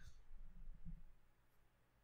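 Near silence: quiet room tone, with a few faint low sounds in the first second.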